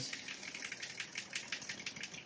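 Wet paintbrush spun back and forth between the palms over a stainless steel sink, its bristles flicking out rinse water in a rapid, even patter of fine ticks and spatters. This spins the brush dry after washing.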